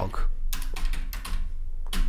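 Computer keyboard typing: a handful of separate key clicks as a line of code is typed, over a low steady hum.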